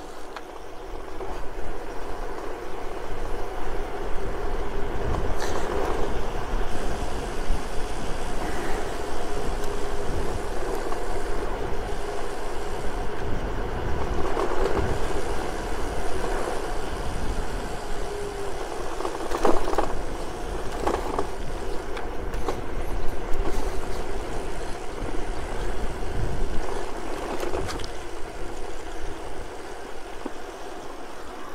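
Electric bicycle being ridden at speed: wind rumble on the microphone and tyre noise on rough asphalt, with a steady hum that sounds like the e-bike's motor underneath. A few short knocks, about a third of the way in and again around two-thirds of the way through, come from bumps in the cracked road surface.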